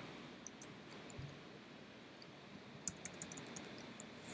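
Faint clicks of a computer keyboard and mouse: a few scattered clicks, then a quick run of about eight key taps about three seconds in.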